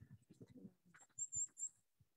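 Faint high bird chirps a little past a second in, over quiet low knocks and rustle from a hand-held phone being carried while walking.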